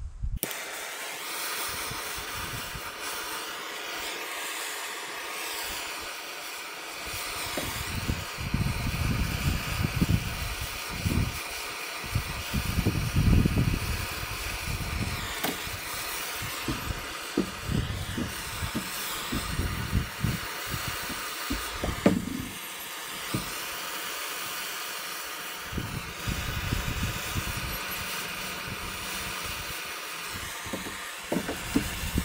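Hand-held propane torch burning with a steady hiss as it heats a copper pipe fitting for soldering. The hiss starts suddenly as the torch is lit, and from about eight seconds in uneven low rumbling swells come and go.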